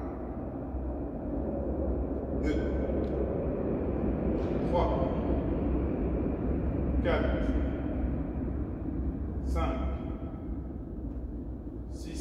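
A man's short vocal sounds, four of them about two and a half seconds apart, over a steady low hum of room noise.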